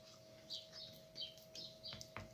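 Soft scraping of a silicone spatula smoothing a thick paste in a plastic tub, under faint, high, bird-like chirps that come several times over, and a faint steady hum.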